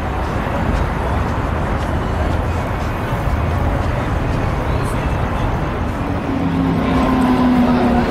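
Busy city street ambience: steady road traffic with pedestrian chatter. From about six seconds in, music with long held notes joins in.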